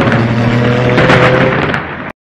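Channel-intro sound design: a loud, steady droning chord with a crackling, thunder-like noise over it. It drops somewhat in level near the end.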